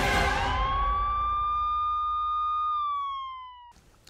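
A siren-like wail used as a sound effect in a police programme's logo sting: after a whoosh, one tone rises, holds steady, then slides down and cuts off abruptly shortly before the end.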